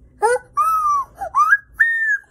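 High-pitched owl imitation by a person: a run of four or five short hooting calls that rise and fall in pitch.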